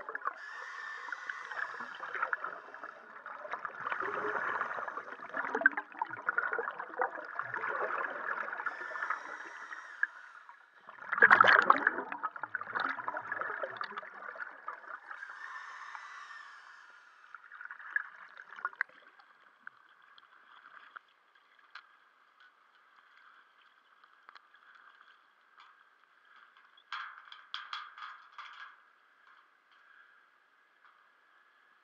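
Scuba diver's exhaled regulator bubbles gurgling and rushing past an underwater camera, coming in bursts every few seconds, the loudest about eleven seconds in. After about nineteen seconds it drops to a faint steady hiss, with a short run of clicks near the end.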